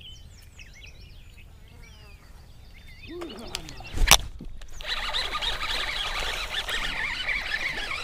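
Small birds chirp softly, then a sharp knock comes about four seconds in as a bass takes a topwater frog and the rod loads up. After that a fishing reel is cranked steadily with a rasping squeal from its handle, which is struggling.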